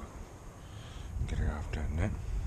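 Wind rumbling on the microphone, with a low, murmured voice for about half a second in the second half.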